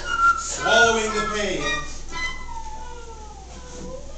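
A performer's voice on stage, vocalising with sliding pitch, ending in one long falling note in the second half.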